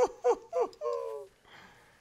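A man's excited high-pitched whoops: about four short cries in the first second and a bit, the last one longer, trailing off.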